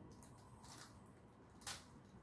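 Near silence while a Skewb puzzle is being twisted by hand, with one faint, short plastic click near the end as a layer turns.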